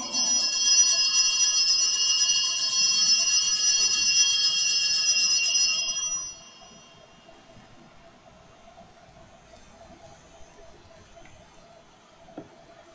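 Altar bells (a cluster of small Sanctus bells) rung continuously for the elevation of the chalice at the consecration, a bright jingling ring that stops about six seconds in.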